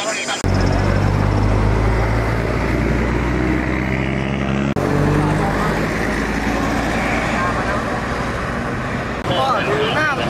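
Road traffic: a motor vehicle's engine runs with a low, steady drone that rises slightly in pitch, then cuts off suddenly about five seconds in. More traffic noise follows, and voices come in near the end.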